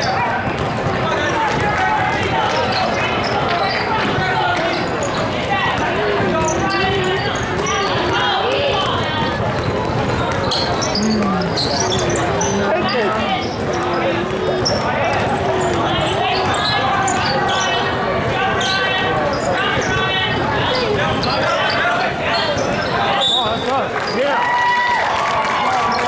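Basketball game in a large hall: the ball dribbling and bouncing on a plastic tile court, with players and spectators calling out and chattering throughout.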